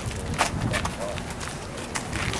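Footsteps of several people walking on pavement, irregular hard steps, with people talking in the background.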